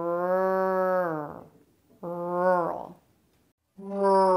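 A woman's voice drawing out the American R sound of 'rural' ('rrr', 'rurr') as a long, steady-pitched hum that falls off at the end. A shorter held R follows about two seconds in, and a third begins near the end.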